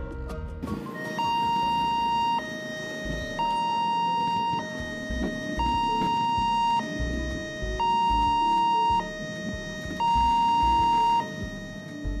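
Railway level-crossing warning alarm sounding a two-tone signal: a higher tone held about a second, then a lower one, alternating over and over, warning that a train is coming and the crossing is closed.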